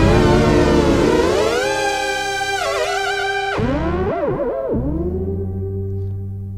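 Waldorf Blofeld synthesizer pad chord held on the sustain pedal, its pitch sliding smoothly up, then dropping sharply and wobbling before gliding back as the lag-processed mod wheel is moved. The sound turns duller in the second half, and the notes slide at slightly different times because uncertainty modifiers randomize the lag time.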